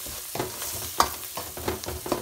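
A metal spoon scrapes and knocks repeatedly against a stainless steel kadhai while stirring an onion, ginger-garlic and spice masala that sizzles steadily as it fries in oil. One sharper clink comes about halfway through.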